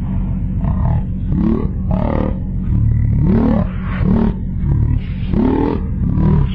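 A voice making a string of short calls that rise and fall in pitch, roughly one every half second to second, over a steady low rumble.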